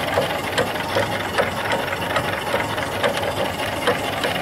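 Small steam engine (2.75-inch bore, 4-inch stroke) running steadily under the boiler's steam, a regular clatter of about two to three beats a second over a steady hiss.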